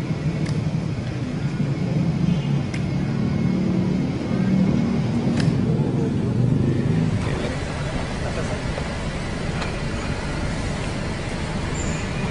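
Outdoor street ambience: a steady low rumble of traffic with indistinct voices and a few faint clicks.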